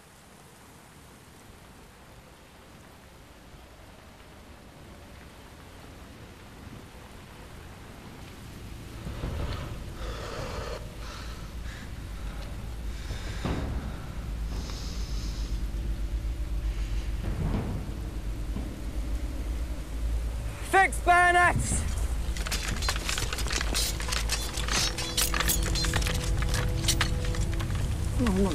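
Rain falling in a trench, with a low rumble that swells up and stays heavy, like distant shellfire or a score drone. About three-quarters through there is a short shout, then a rapid run of metallic clicks as soldiers fix bayonets to their rifles.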